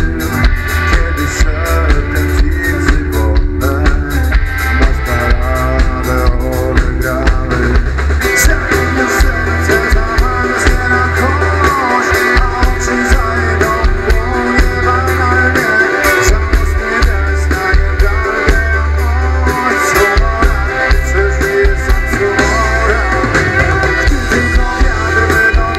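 Live band playing loudly through the stage sound system, with a drum kit, guitar and a heavy bass.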